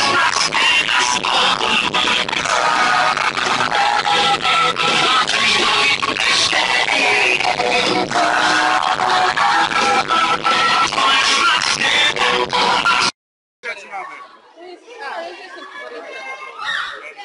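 Loud live pop concert music: a singer over a band with guitar. It cuts off suddenly about two seconds before the end, and quieter voices talking follow.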